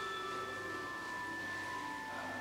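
Soft instrumental music of long held notes, the chord shifting near the end.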